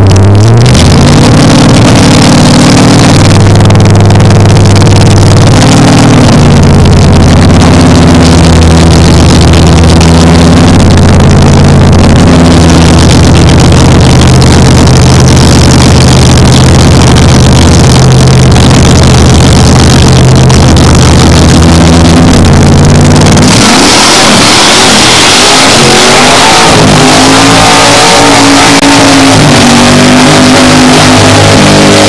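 Engines of American drag-racing cars running loudly at the start line, holding a steady, high idle with small shifts in pitch. About 23 seconds in the sound changes abruptly as the cars launch: engines rev up with rising pitch and a loud rushing noise as they accelerate away.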